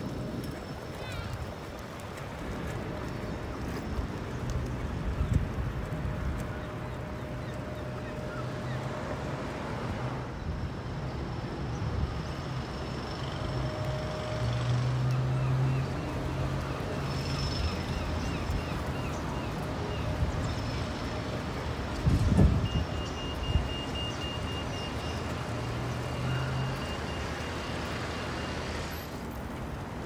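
Road traffic heard from a moving bicycle: a steady rumble of passing vehicles, with a sharp thump about 22 seconds in. A high, repeated beeping runs through the last several seconds.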